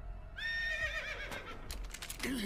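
A horse whinnying, played from the episode's soundtrack: one long call starting about a third of a second in, wavering and falling in pitch, followed by a few sharp knocks near the end.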